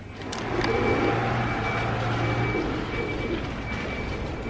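Outdoor street traffic: a vehicle engine's low, steady hum that fades out about two and a half seconds in, with a thin high tone coming and going over the noise.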